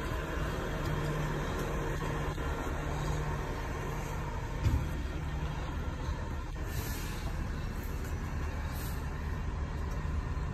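Yamaha TW200's single-cylinder engine idling steadily as a low, even hum, with a single short thump about halfway through.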